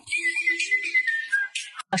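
A whistle-like tone, held for about a second and a half and sliding slightly down in pitch, with a faint lower tone beneath it. It is an edited-in transition sound effect marking the cut from one skit to the next.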